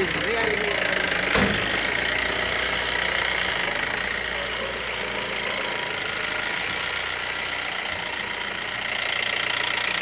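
Car engine idling steadily, with one sharp click about a second and a half in.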